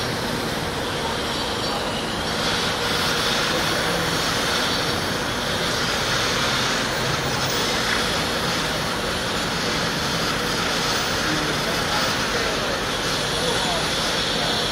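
Steady din of construction-site machinery and city traffic, an even rumble and hiss with no distinct event standing out.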